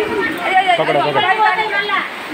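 People talking, voices chattering over one another.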